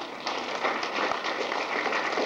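Audience applauding: many hands clapping as a dense, even patter.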